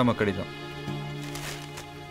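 Film background music holding a steady low sustained note, after a brief bit of a man's voice at the very start.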